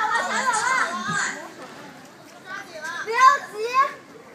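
Onlookers' voices calling out over one another, with a dense cluster of overlapping voices in the first second and a few short rising shouts near the end.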